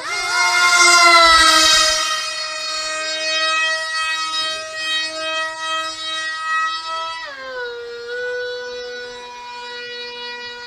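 Electric motor and propeller of a mini remote-control plane whining in flight at a steady high pitch, loudest in the first two seconds, then dropping to a lower pitch about seven seconds in.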